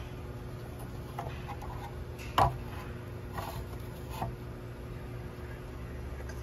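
A few light clicks and knocks, with one sharp click about two and a half seconds in, over a steady low hum.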